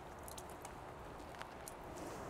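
Faint wet squishing with a few light ticks, as a wheel brush soaked in soapy water is lifted out of the wash bucket and brought to the wheel.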